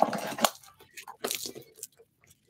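A bag being handled: a few short clicks and soft rustles as its straps and hardware are moved.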